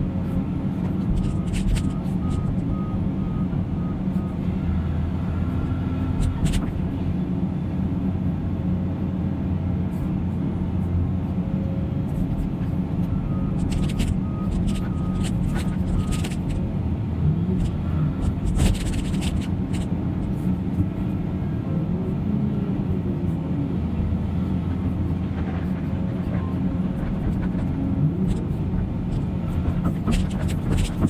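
Diesel engines of a large excavator and a McCloskey debris screener running steadily together, with intermittent clanks and rattles of demolition debris and the steel bucket, a few sharper ones a few seconds in, a handful in the middle, and more soon after.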